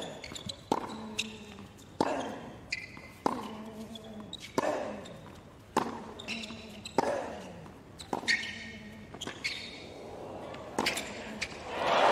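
Tennis rally on a hard court: the ball is struck by rackets and bounces on the court, a sharp knock roughly every half second to second, with short vocal grunts after several of the shots. Crowd applause swells up right at the end as the point finishes.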